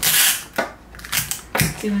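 Clear adhesive tape pulled sharply off a desktop dispenser and torn, a short loud rasp that fades within half a second, followed by a few light clicks and crinkles of the cellophane cone being handled.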